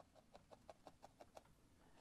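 Faint, quick, even stabbing of a felting needle through wool fibre into the felting mat, about six pokes a second.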